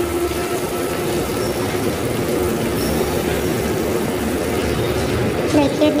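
Chopped green chillies frying in a little hot oil in a steel wok, a steady sizzling hiss.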